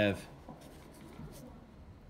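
Faint rubbing and soft clicks of a stack of trading cards being handled and slid between the fingers.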